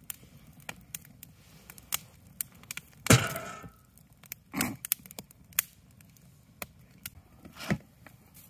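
Wood fire crackling in a steel fire pit, with many small sharp snaps and a few louder pops. The loudest pop comes about three seconds in and fades over about half a second. Two more loud ones follow, one about a second and a half later and one near the end.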